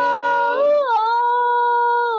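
A woman's voice holding a long sung note in a gospel worship song, its pitch rising and falling briefly about halfway through.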